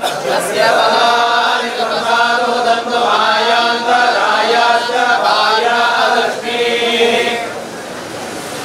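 Hindu priests chanting mantras together in long, steadily held phrases, with a brief break about six seconds in.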